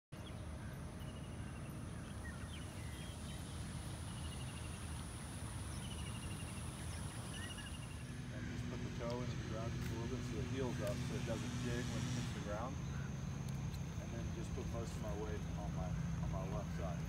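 Outdoor ambience: a steady high-pitched drone with short repeated bird-like chirps. After about eight seconds it gives way to indistinct background voices over a steady low hum, with a few faint clicks.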